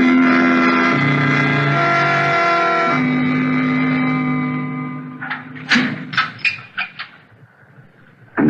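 Radio-drama organ music bridge: sustained chords over a bass note that shifts twice, fading out after about five seconds. It is followed by a short run of sharp knocks in the last few seconds, as a sound-effect scene change.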